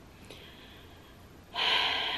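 A woman's short, sharp intake of breath about one and a half seconds in, after a quiet pause.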